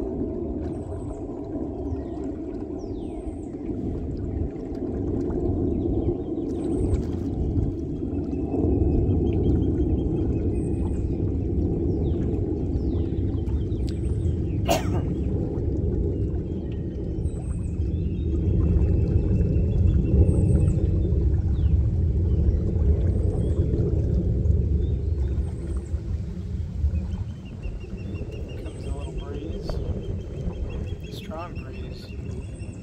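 Small boat's motor running steadily, getting louder through the middle and easing off near the end. Birds call in short chirps over it, and a single sharp click comes about halfway through.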